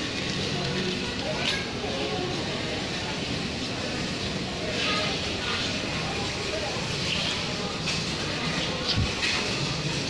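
Busy supermarket background: a steady wash of indistinct shoppers' voices and the rolling rattle of a plastic shopping trolley's wheels over a hard floor, with a brief knock near the end.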